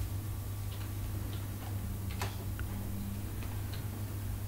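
A few irregularly spaced clicks of laptop keys and touchpad over a steady low hum.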